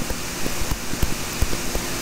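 Stylus tapping and scratching on a tablet while handwriting digits: irregular soft ticks and low taps over a steady hiss.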